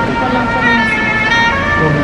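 A woman's voice speaking through a microphone and PA, over soft background music with long held notes that shift pitch about halfway through.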